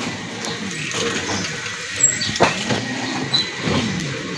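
A motor vehicle running close by, with a few sharp knocks.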